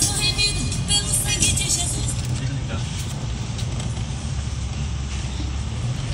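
Steady low engine and road rumble heard from inside a moving vehicle. Music with singing plays over it for the first two seconds, then drops away.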